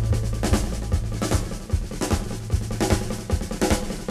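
Drum kit in a 1970s rock recording playing a busy passage of snare and bass drum hits. A low held bass note under it drops out a little over a second in.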